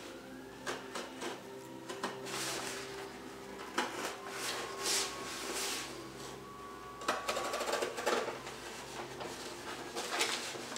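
Paper rustling and scraping as sheets of paper are handled and cut with a craft knife on a cardboard backing, in irregular bursts with a few small clicks, over a steady low hum.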